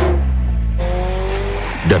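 Race car engine sound, its note falling in pitch at the start over a steady low drone, then a higher, slightly rising note from about a second in.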